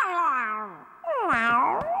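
A cartoon cat meowing twice. The first meow falls away and ends before a second in. A second meow follows about a second in, dipping and then rising again.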